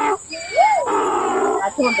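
Donkey braying: one drawn-out, harsh pitched call lasting about a second and a half, with a short voice just before and after it.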